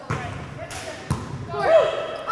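Volleyball being struck by players' hands and arms: a sharp hit at the start and another about a second in, as the ball is served and passed. Players call out shortly before the end.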